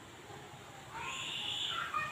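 An animal call, about a second long, starting about a second in and high-pitched, over quiet outdoor background.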